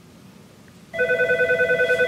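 Office desk telephone ringing with a fast-pulsing electronic trill that starts about a second in.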